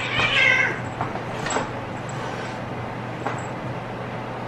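Cats play-fighting: one gives a short, high yowl in the first second, followed by a few light scuffling knocks.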